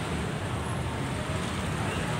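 Steady low outdoor background rumble, like distant road traffic, with no distinct event standing out.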